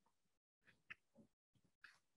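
Near silence: room tone, with two faint brief sounds, about a second in and near the end.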